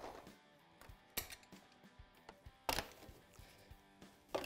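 A few light clicks and knocks of a hand tool working a small wire-holding clamp on an ATV carburetor, the sharpest about a second in and again near three seconds in, over faint background music.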